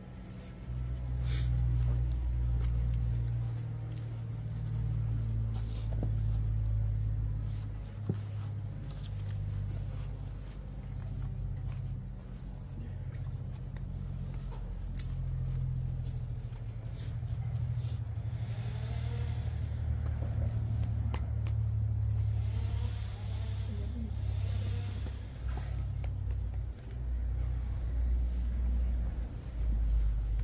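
A low, uneven rumble on the microphone that rises and falls in level throughout. Faint murmured voices come in during the second half.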